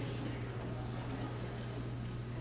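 Steady low electrical hum with faint room noise of a large hall; no distinct knock or voice stands out.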